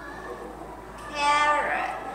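Speech only: one drawn-out, high-pitched word in a sing-song voice about a second in, with a quiet room around it.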